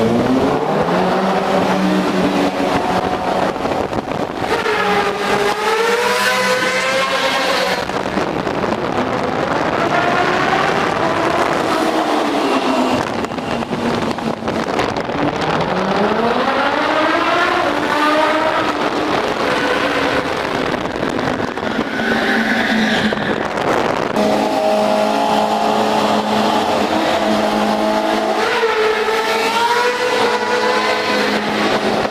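Motorcycle engine revving hard, its pitch climbing and falling again and again, then holding a steady note for several seconds near the end.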